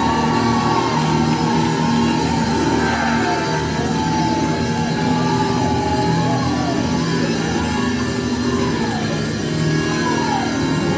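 Live church band playing continuously, with sustained held notes over a steady full accompaniment.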